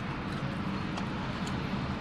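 Steady low rumble inside a parked car's cabin, with a few faint clicks.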